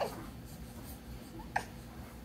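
Baby mouthing and chewing a cloth, making two brief squeaky mouth sounds that fall in pitch, one right at the start and another about a second and a half in.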